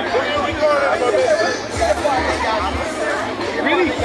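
Several people talking at once in overlapping, indistinct chatter, with music playing in the background.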